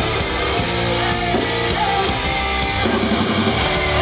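Live rock band playing an instrumental stretch of a heavy, guitar-driven song: electric guitar over drums and bass, loud and unbroken.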